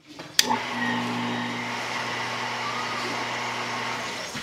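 A wall switch clicks about half a second in, and a small electric water pump starts and runs with a steady hum, pumping seawater up to a tank.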